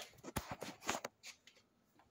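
Faint handling noise from a phone being moved: a few soft clicks and rustles in the first second and a half.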